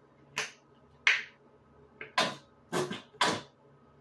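A run of six short, sharp wet clicks and squishes in quick succession, spaced about half a second apart, with a louder group in the second half.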